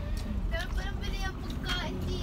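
Steady low rumble of a van's cabin, with short high-pitched bits of voice over it, about half a second in and again near the end.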